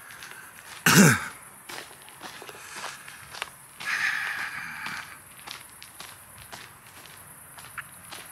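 Footsteps of a person walking along a park path, with one short, loud throat sound about a second in whose pitch drops steeply, typical of a cough.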